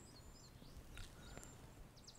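Near silence outdoors with a few faint bird chirps and a short high whistle.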